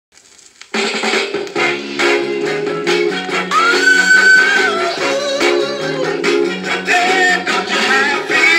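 Northern soul record playing from a 7-inch vinyl single on a turntable: the music starts just under a second in after a brief quiet lead-in, with a full band and a held high note about halfway through.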